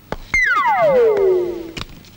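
Synthesizer sound effect in a film score: one tone that starts abruptly and glides steadily down from high to low over about a second and a half, a dramatic stinger.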